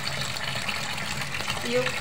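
Water running steadily from a kitchen tap into a stainless steel sink.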